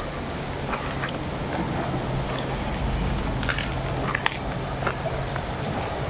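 Footsteps crunching on leaf litter and gravel, with faint scattered clicks, over a steady low engine hum that stops shortly before the end.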